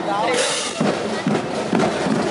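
Voices close by, with a high sliding vocal sound and a short, sharp burst of noise about half a second in.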